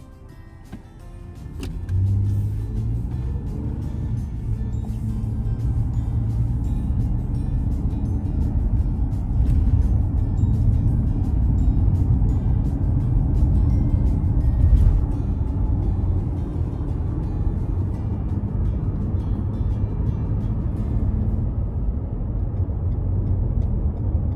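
Road and engine noise heard inside a moving car's cabin: a steady low rumble that comes in sharply about two seconds in and holds.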